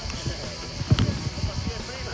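A single sharp impact of a football about a second in, the ball being struck or landing during a goalkeeper diving drill, over background music and voices.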